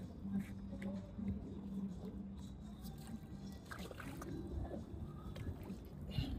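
A steady low mechanical hum over a low rumble, with a few light knocks and faint voices.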